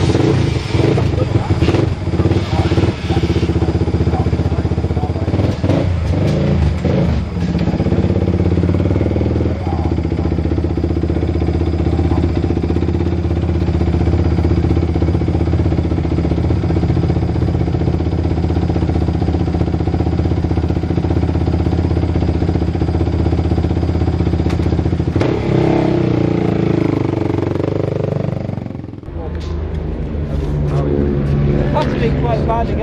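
Single-cylinder Suzuki Moto 450 supermono race bike engine running steadily, its pitch falling away a few seconds before the end.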